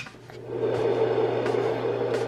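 A fan-type white noise machine switched on with a click, its rushing noise rising over about half a second and then running steadily with a low hum underneath.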